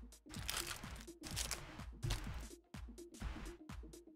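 Crinkling of a Flesh and Blood Monarch booster pack wrapper as it is torn open and its cards pulled out, over background music with a steady beat.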